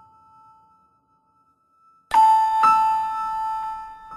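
A two-tone chime rings out. Struck notes fade to near silence early on, then two new strikes come about half a second apart a little past halfway and ring on, slowly dying away.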